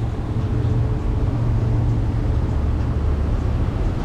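Quad Mercury 450R supercharged V8 outboards running steadily, a constant low hum with hull and water noise around it.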